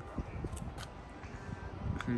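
Faint outdoor background noise: a steady low rumble with a few soft clicks.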